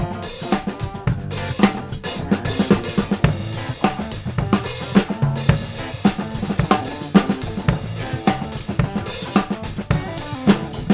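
Live band playing an instrumental passage: a drum kit with snare, bass drum and cymbals keeps a steady beat under electric guitar and keyboard.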